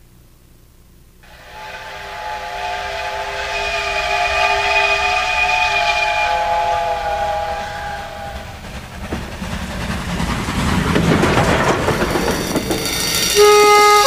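A train horn sounding a steady chord of several tones, growing louder as the train approaches, then giving way about eight seconds in to the rushing, rattling noise of the train passing close by. Music comes in just before the end.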